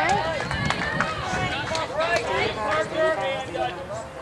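Several voices of spectators and players overlapping, calling out and chattering at a baseball game.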